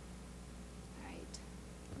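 Quiet room tone with a steady low electrical hum, then a woman's voice starting about a second in.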